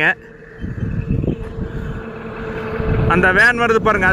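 A truck approaching along the road, its engine and tyre rumble growing steadily louder from about half a second in.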